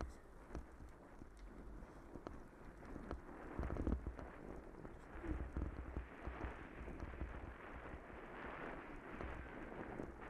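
Bicycle tyres rolling over a wet, rough gravel and mud track: a steady crunching hiss with scattered clicks and knocks as the bike jolts, plus a low rumble, growing louder about three seconds in as the bike picks up speed.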